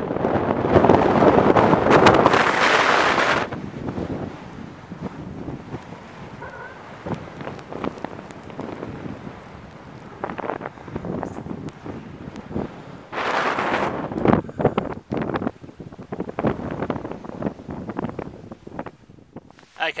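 Wind buffeting the camera microphone in gusts: a loud rush for the first few seconds, quieter after, another strong gust about thirteen seconds in, then short choppy buffets.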